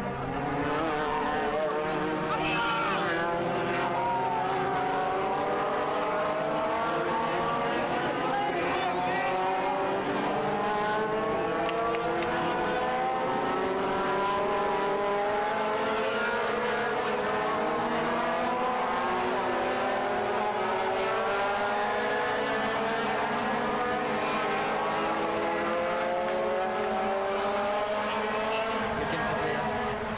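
A motor running without a break, its pitch rising slowly and steadily.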